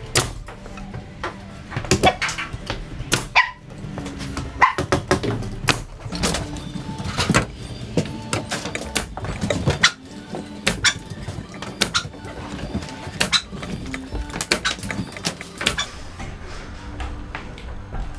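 Pneumatic framing nail gun firing nails one after another into hardwood timbers being laminated into a bearer: many sharp shots, about one every half second to a second, over background music.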